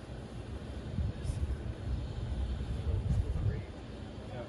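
Wind buffeting the microphone as an uneven low rumble that swells in the second half, with two faint taps, one about a second in and one near three seconds.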